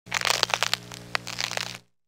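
Crackling intro sound effect on an animated logo: a dense run of crackles and sharp snaps over a low steady hum, cutting off suddenly just before two seconds.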